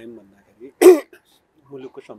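A person clearing their throat once, short and loud, about a second in, between stretches of speech.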